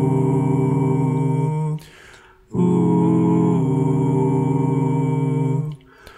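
Six-voice a cappella ensemble singing soft, wordless sustained chords. Two long held chords, each moving to new notes partway through, are separated by a short gap with a soft hiss about two seconds in.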